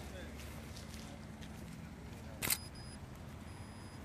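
Outdoor background noise with faint voices, and a single sharp click about two and a half seconds in.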